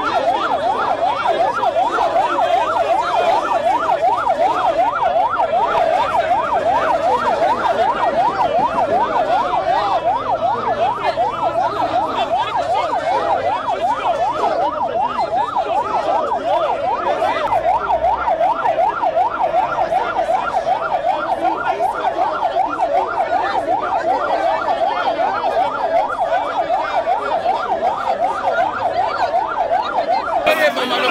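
A siren sounding in a fast yelp, its pitch sweeping rapidly up and down several times a second without a break.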